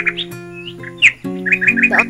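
Background music with held notes, with birds chirping over it, including a quick run of short chirps in the second half.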